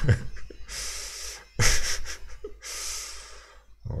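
A man laughing quietly through his breath: three long breathy exhales, the second one sharper and loudest.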